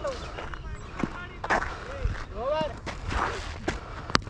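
Open-air cricket-ground sound: a few short distant shouted calls, some sharp clicks and a steady wind rumble on the microphone.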